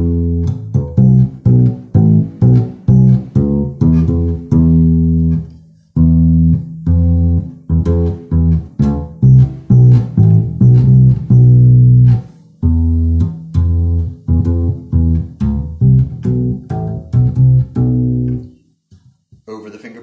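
Electric upright bass played pizzicato, plucked close to the bridge for a brighter tone: a steady run of plucked notes with short breaks about six and twelve seconds in, stopping a little before the end.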